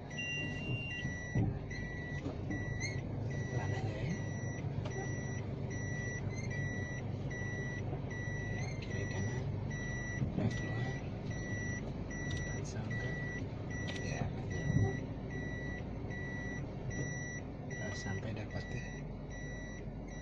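A car's reverse-gear warning beeper sounding a steady, evenly repeating beep over the low hum of the running engine. It signals that the automatic's selector is in R while the car reverses.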